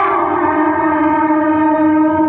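Outdoor horn loudspeaker playing a loud, long, horn-like tone. The pitch drops right at the start and then holds steady.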